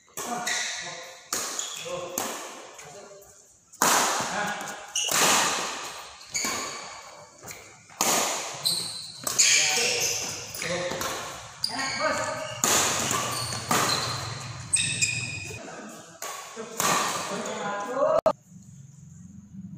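Badminton doubles rally: rackets striking a shuttlecock about once a second, each sharp crack ringing on in a large echoing hall.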